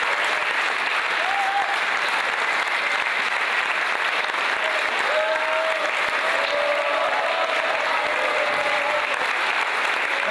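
Audience applauding steadily, with a few voices calling out over the clapping in the second half.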